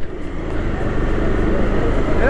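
KTM RC390 single-cylinder engine running steadily at low speed, with road and wind noise.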